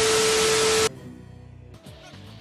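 A "technical difficulties" sound effect: a loud burst of TV static with a steady beep tone over it, lasting about a second and cutting off abruptly.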